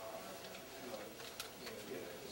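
Faint, muffled documentary-film soundtrack playing over the room's speakers, with one light click about a second and a half in.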